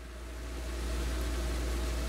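Steady low hum with an even hiss over it, a background noise that swells slightly.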